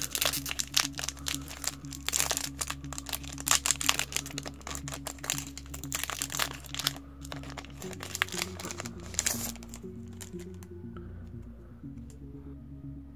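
Shiny foil trading-card booster-pack wrapper crinkling and tearing as it is pulled open by hand, with steady background music underneath. The crinkling stops about ten seconds in, leaving only the music.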